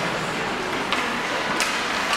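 Ice hockey rink noise: a steady murmur of spectators and arena din, with two sharp clicks, about a second in and near the end, from play on the ice.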